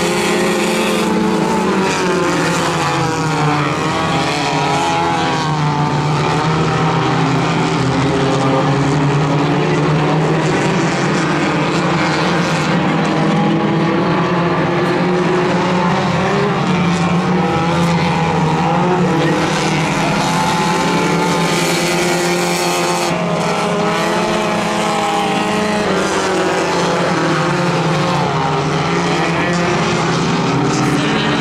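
Several Hornet-class compact race cars with four-cylinder engines running together in a dirt-track heat race. Their engine notes rise and fall as the cars accelerate down the straights and lift for the corners.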